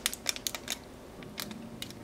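A person biting into and chewing a soft whole wheat blueberry fig bar close to the microphone: a scatter of small, sharp clicks and crackles from the chewing and the plastic wrapper held around the bar.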